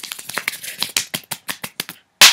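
Rapid run of light taps, about eight to ten a second, like a drumroll.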